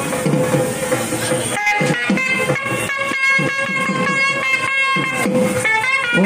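Indian temple ritual music: long held melodic notes over a run of quick drum strokes, with a brief break about one and a half seconds in.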